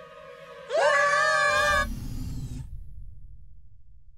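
Cartoon boys' voices screaming, rising in pitch as the scream starts about a second in and held for about a second, over the low rumble of an animated space shuttle's engine firing, which fades out over the next second or so.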